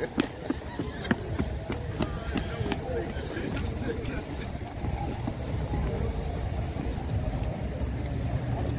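Outdoor walking ambience: a steady low rumble on the phone microphone, with footsteps on concrete in the first few seconds and faint voices in the background.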